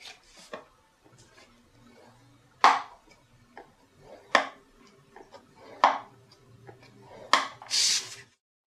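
Scoring tool drawn along the groove of a scoring board through cardstock, about four short strokes, then a longer rustle of the card sliding off the board near the end.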